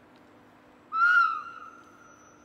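Horn of a Matterhorn Gotthard Bahn locomotive: one short blast on a single note about a second in, then fading away over the following second.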